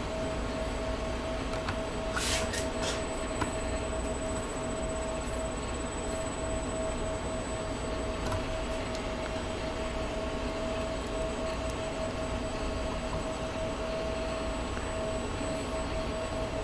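Steady workshop background hum with a constant mid-pitched whine. A couple of brief scratchy sounds come about two and three seconds in, from a small Phillips screwdriver driving tiny screws into 3D-printed plastic.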